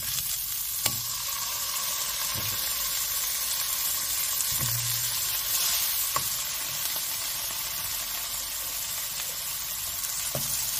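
Thinly sliced chicken sausages sizzling in hot oil in a nonstick frying pan, a steady hiss, with a few soft knocks as more slices are laid into the pan.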